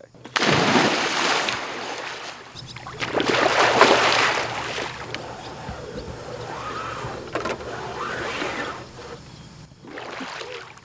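Pond water splashing and churning as a man swims in it, loudest about a second in and again a few seconds later, with faint voices near the end.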